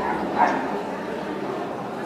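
A dog barks once, short and sharp, about half a second in, over background chatter.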